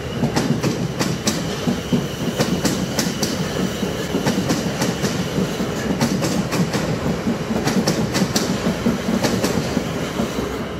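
South Western Railway Class 450 Desiro electric train running past at close range. Its wheels click sharply and irregularly over the rail joints and pointwork above a steady rolling rumble, with a faint high whine running underneath.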